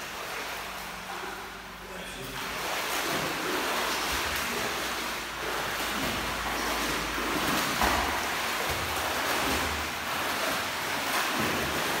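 Water splashing and churning in a swimming pool as swimmers swim through it, growing louder about two and a half seconds in.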